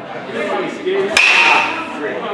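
A baseball bat hitting a pitched ball about a second in: one sharp crack with a ringing tone that dies away over about half a second.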